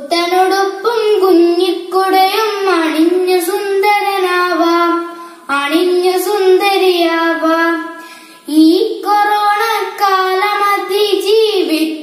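A young boy singing a song solo, in long held notes that waver in pitch, with brief pauses for breath about five and a half and eight and a half seconds in.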